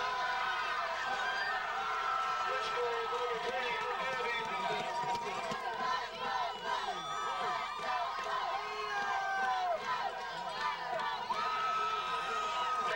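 Crowd of football spectators talking and calling out over one another: many overlapping voices at a steady level, with no single speaker standing out.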